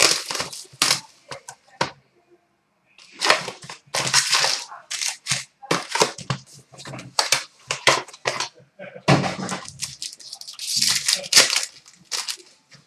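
Hockey card packs being opened by hand: wrappers crinkling and tearing, with cards shuffled, in a run of sharp crackles broken by a short pause about two seconds in.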